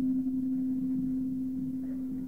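A steady low hum on one tone, slowly weakening, over faint low background noise.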